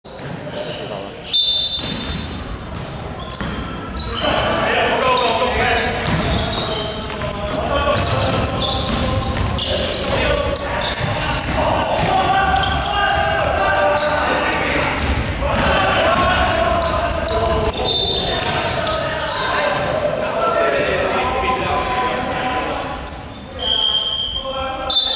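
Basketball game in a large, echoing sports hall: the ball bouncing on the hardwood court, brief high sneaker squeaks, and voices calling out over it.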